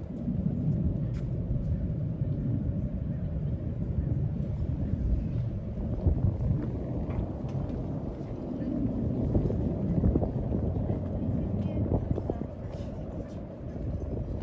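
Outdoor ambience of a waterfront walk: a steady low rumble, typical of wind on the microphone and distant traffic, with faint voices of passers-by.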